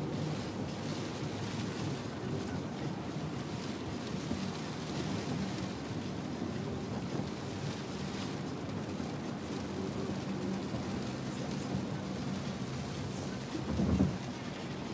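Road and rain noise inside a car driving through heavy rain: a steady low drone of engine and wet tyres under the hiss of rain on the roof and windshield. A brief thump near the end.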